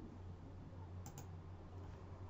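A computer mouse button clicked twice in quick succession about a second in, over a faint steady low hum.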